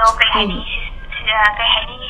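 A young woman talking, her voice thin and tinny, with the low and high end missing.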